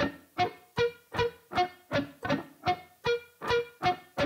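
Electric guitar playing a slow sweep-picked arpeggio across three strings, single notes at about two and a half a second. Each note dies away before the next one sounds, so the notes stay separate rather than ringing together.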